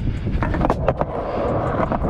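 Skateboard wheels rolling on a concrete sidewalk: a steady low rumble, with a few sharp clicks between about half a second and one second in.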